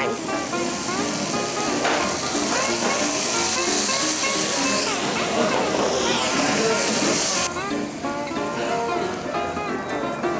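Lime juice sizzling as it hits a hot frying pan of sautéed vegetables, a steady hiss that stops abruptly about seven and a half seconds in. Background music plays throughout.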